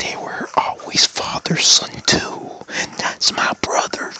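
A man's voice whispering and speaking in short broken phrases, the words not clear enough to make out.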